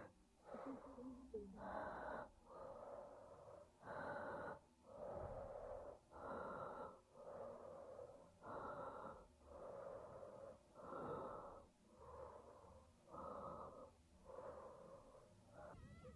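A person breathing hard and fast, quietly, with about one breath, in or out, each second.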